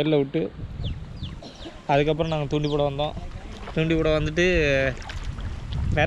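A man's voice calling out in two drawn-out stretches of sound, over a low rumble of water moving around people wading in a pond.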